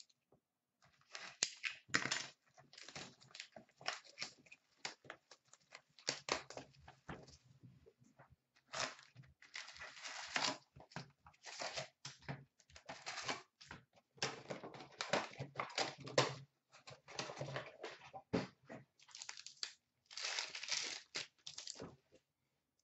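A 2016-17 Fleer Showcase hockey card hobby box being torn open and its foil packs pulled out and ripped: a run of irregular tearing, crinkling and rustling of cardboard and foil wrappers, with short pauses.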